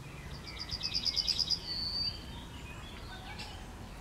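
Yellowhammer singing one song: a fast run of about a dozen repeated high notes, then one longer, slightly lower drawn-out note.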